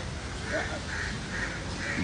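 A bird calling four times in short calls about half a second apart, over a steady background hiss.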